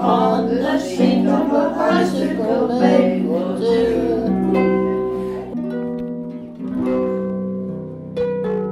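Music: voices singing over a plucked harp accompaniment. About halfway through the singing stops and the harp carries on alone with ringing plucked notes.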